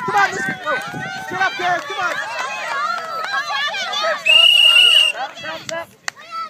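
Many children's and adults' voices call out and shout over one another. About four seconds in comes a single steady whistle blast lasting about a second, the loudest sound here, typical of a referee's whistle.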